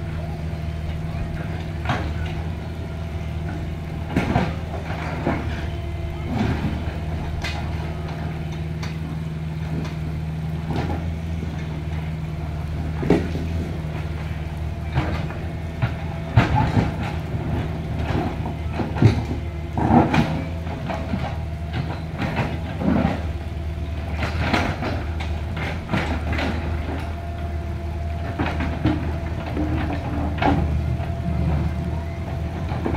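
Compact crawler excavator working in a rocky streambed: its diesel engine runs steadily, with irregular clanks and knocks as the machine and its bucket work among the river stones, thickest in the middle of the stretch.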